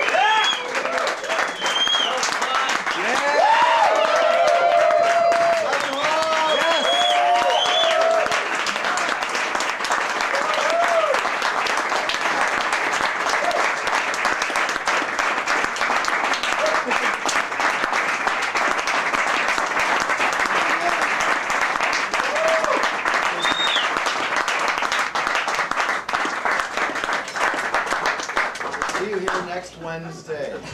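Club audience applauding, with whoops and shouts of cheering over the clapping in the first several seconds. It then settles into steady applause with an occasional shout.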